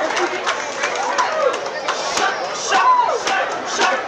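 Crowd voices and shouts, with a run of sharp slaps and knocks scattered through.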